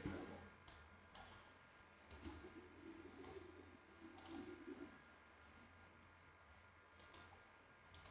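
Faint computer mouse clicks, about nine, scattered irregularly, including two quick pairs of clicks.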